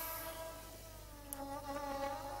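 Soft background music score: several held, droning tones that shift slightly in pitch partway through.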